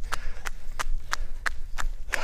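Running footsteps in thin running sandals slapping on a paved road, about three steps a second, over a steady low rumble.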